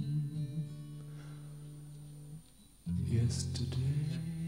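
Acoustic guitar music from a live concert recording. A held chord fades away, there is a brief near-silent pause, and strummed acoustic guitar comes back in strongly about three seconds in.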